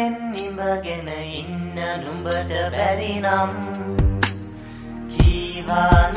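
A Sinhala song playing. A sung vocal line runs over a steady low bass, then the voice drops out about four seconds in and a few sharp drum strikes with a low kick follow.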